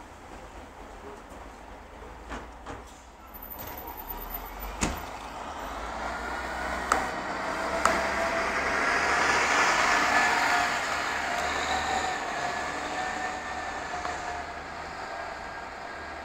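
A Volvo B10R-55 city bus with a Voith automatic gearbox pulls away and drives past. Its engine and drivetrain whine grow louder as it passes, then fade as it moves off. A few sharp clicks or knocks come before it gets going.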